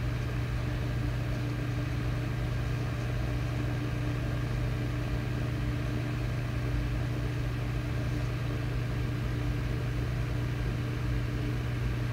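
A steady low mechanical hum with a fainter higher tone over it, holding an even level throughout.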